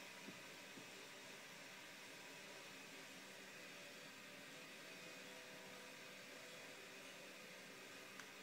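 Near silence: a steady, faint hiss of room tone, with a couple of tiny ticks in the first second.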